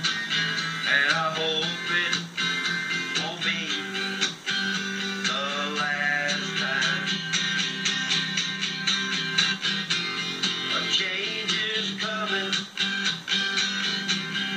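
Steel-string acoustic guitar strummed in a steady rhythm through an instrumental passage of a song between sung lines, with a wavering melody line heard over it at times.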